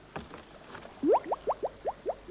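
Dry ice bubbling in a bowl of warm water as it turns to carbon dioxide vapour. From about a second in there is a quick run of short rising bloops, about five a second.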